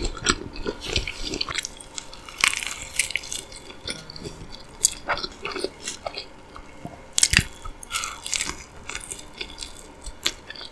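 Close-miked chewing and biting of a soft egg breakfast sandwich: wet mouth clicks and smacks, with a few sharper bites, the loudest about seven seconds in.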